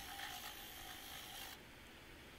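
Faint background hiss and low rumble with no distinct event. The hiss drops away about one and a half seconds in.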